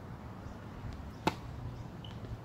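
Tennis racket striking the ball on a serve: one sharp crack a little over a second in, over a low steady outdoor background.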